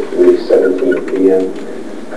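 Muffled, unintelligible speech that sounds thin and boxy, with the voice continuing throughout.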